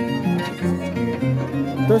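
Harp and violin music: a violin melody over repeating low plucked bass notes from the harp.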